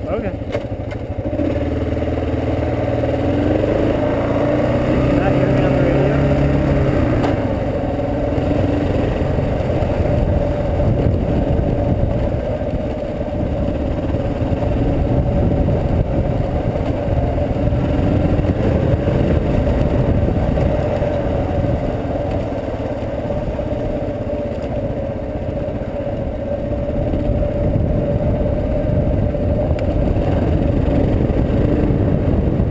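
Dual-sport motorcycle engine pulling away, its pitch rising through the first several seconds, then running steadily as the bike rides along a gravel road.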